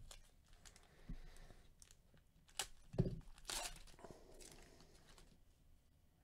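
Faint crinkling and tearing of a foil trading-card pack being opened, with cards being handled. The loudest crinkling comes a little past halfway and dies out near the end.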